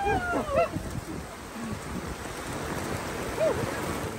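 Steady rain with gusty wind buffeting the microphone, after a short burst of laughter at the start.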